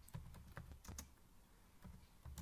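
Faint, irregular keystrokes on a computer keyboard: a few single keys pressed while a sentence is typed.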